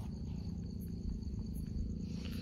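Crickets chirping steadily and faintly over a low background hum.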